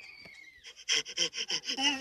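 Cartoon soundtrack dialogue: a short falling tone, then a high-pitched character voice speaking from about a second in.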